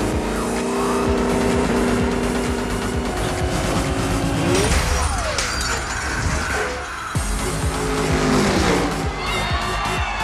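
Car racing on a film soundtrack: a car engine running at high revs with tyres squealing and skidding, over music. The engine holds a steady pitch for about the first three seconds, then breaks into shifting revs and tyre noise.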